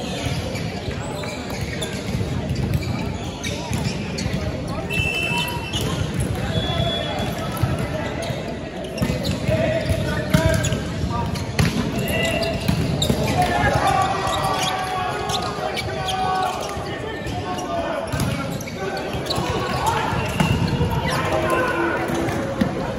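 Indoor volleyball in a large echoing sports hall: balls thud against hands and the wooden floor over a constant background of bouncing and players' voices. There is a sharp loud hit about ten and a half seconds in, then calls and shouts as the rally plays out.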